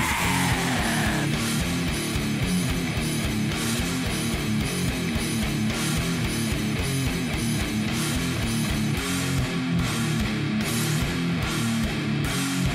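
Slam death metal instrumental passage: heavily distorted, down-tuned electric guitars and bass chugging a riff over fast drums, with cymbals pulsing in a regular pattern. A falling squeal dies away about a second in.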